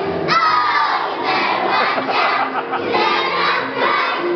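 A large group of young children's voices shouting and singing together, with a strong shout near the start.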